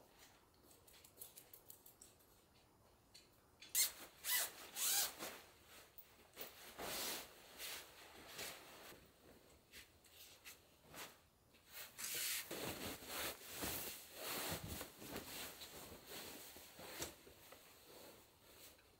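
Faint footsteps, then a few sharp clicks about four seconds in, followed by repeated swells of cotton bedding rustling as it is handled and pulled about on a bed.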